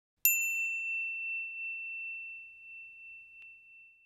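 A single bright bell-like ding, used as an intro logo chime. It is struck about a quarter second in and rings on one high tone, fading away over about four seconds.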